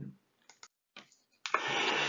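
A near-silent pause in a man's lecture with a few faint clicks, then a sharp in-breath of about half a second near the end, just before he speaks again.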